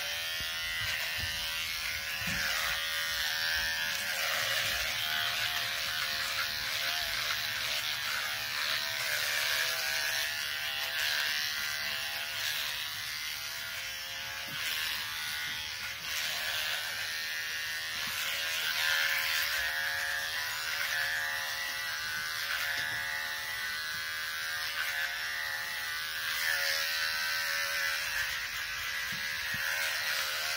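Handheld electric shaver buzzing steadily as it cuts hair, with a rasp that rises and falls as it moves over the scalp and beard.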